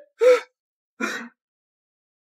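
A man gasps sharply twice in surprise, the second gasp about a second after the first and weaker.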